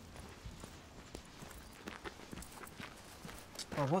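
Faint footsteps, heard as an uneven scatter of soft knocks, then a man starts speaking near the end.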